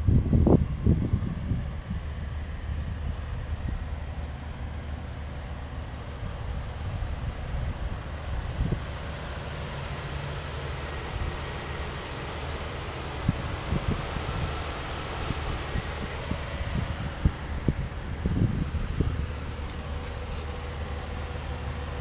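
A steady low vehicle hum outdoors, with scattered low thumps of wind or handling on the microphone.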